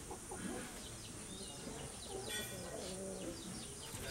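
Birds calling: a run of short, falling chirps, high-pitched and repeated, over lower clucking calls.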